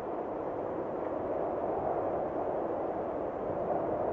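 A steady, even rushing noise with no tune in it, slowly growing louder: an intro sound-effect swell under the title card.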